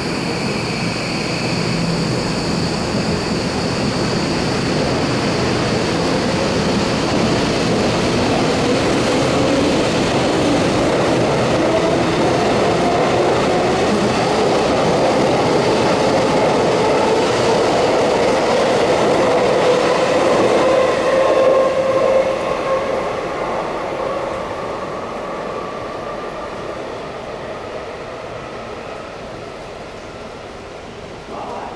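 Tokyo Metro 18000 series electric train departing and accelerating, with the whine of its Mitsubishi SiC VVVF inverter and traction motors gliding up in pitch over the rumble of wheels on rail. The sound builds to its loudest a little past two-thirds through, then fades steadily as the train draws away.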